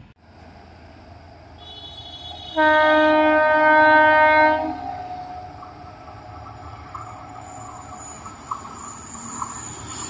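Electric locomotive's horn sounding one long blast of about two seconds, a few seconds in, over a low rumble of the approaching train that slowly grows louder.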